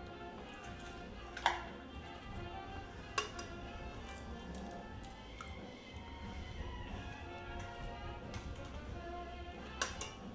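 Quiet background music, with two sharp taps, the first about a second and a half in and the second about three seconds in, from eggs being cracked on a glass mug to separate the whites.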